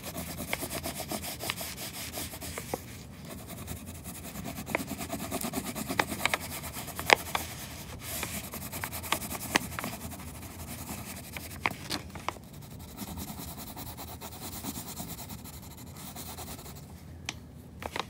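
Wax crayon scribbling back and forth on paper laid over a stencil, in rapid scratchy strokes with a few brief pauses every few seconds.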